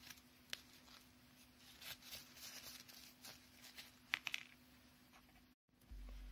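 Faint rustling and a few small clicks of satin ribbon and thread being handled as a ribbon bow is tied off with thread, the sharpest clicks about four seconds in.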